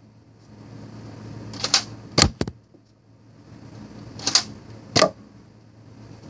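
Sharp plastic clicks and clacks of a Nerf Z-Strike Sidestrike blaster's priming mechanism being worked: a quick pair under two seconds in, the loudest clack just after, then two more clicks about four and five seconds in.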